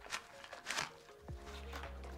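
Soft background music with held notes, over two brief scrapes of a rifle magazine being handled and pushed into a nylon magazine pouch with bungee retention for a test fit.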